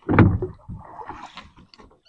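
Small wooden fishing boat on calm water: a short loud knock near the start, then faint splashing and handling noise as a fishing line is pulled in over the side.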